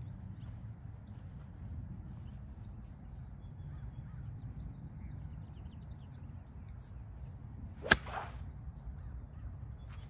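A golf wedge striking the ball out of the rough: one sharp crack of club on ball near the end, with a short swish trailing it. A low, steady background rumble runs underneath.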